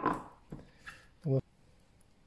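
Whole leeks being set into a stainless-steel stockpot on top of browned beef: a knock fading at the start, then two faint soft bumps.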